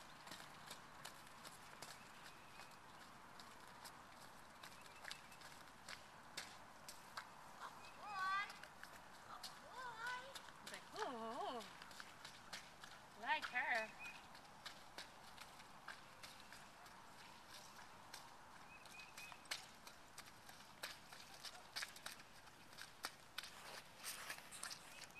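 Faint hoofbeats of a ridden horse moving around a dirt arena, heard as a scatter of soft knocks. A few short bits of a person's voice come through in the middle.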